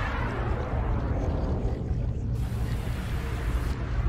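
Low rumbling sound effect of an animated logo intro: a steady deep bass rumble with a faint hiss fading over it.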